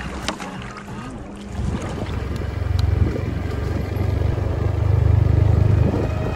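Low rumbling noise buffeting the camera's microphone, starting about a second and a half in and growing louder.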